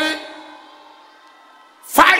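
A loud shouted voice over a public-address system, ringing out in a large hall, tails off at the start. A faint steady held musical tone carries through the pause, and another loud shout begins near the end.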